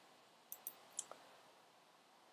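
Faint computer mouse clicks over near silence: about four short clicks, in two pairs about half a second and one second in.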